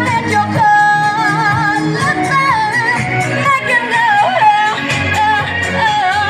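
Live pop song amplified through PA loudspeakers: a singer holds long notes with vibrato over a band accompaniment.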